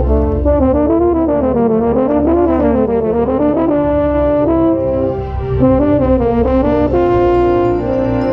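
Drum corps brass line playing, with a baritone horn right at the microphone: quick moving runs of notes through the first few seconds, settling into a held chord near the end.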